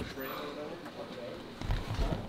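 Faint, muffled talking inside a car cabin, followed near the end by a low rumble of the camera being handled and moved.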